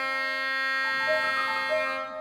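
Oboe holding a long, steady note in a contemporary classical piece for oboe and piano, with a few brief higher notes flickering over it.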